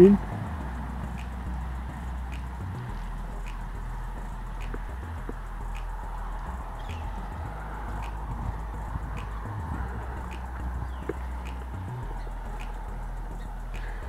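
Outdoor ambience: a steady low rumble and faint hiss, with light ticks about once a second.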